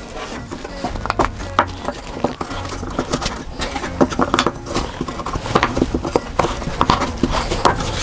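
Wooden boards with router-cut half-blind dovetail joints being pushed together and handled by hand: a run of many small wooden clicks and knocks as the pins and tails seat into each other.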